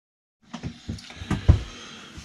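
Handling noise from a camera being gripped and set in place: a run of soft knocks and rubs, the loudest about one and a half seconds in.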